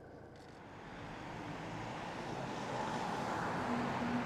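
A passing vehicle: a rush of noise that swells gradually and peaks near the end.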